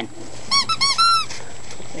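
Five-week-old Great Bernese puppy giving four high-pitched squeals about half a second in, three quick ones and a longer last one.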